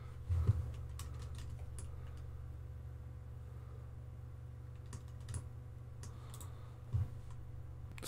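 Scattered computer keyboard and mouse clicks over a steady low hum, with the strongest click about half a second in and a few more later on.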